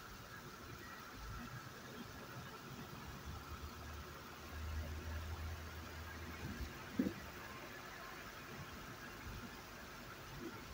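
Quiet road noise inside a moving car: a steady hiss with a faint low rumble. A deeper hum swells for about two seconds past the middle, and a short knock comes about seven seconds in.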